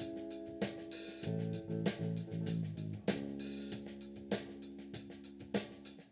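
Live rock band playing an instrumental passage: held chords over drum-kit hits and cymbals. The chords change twice, and the whole sound slowly fades in level.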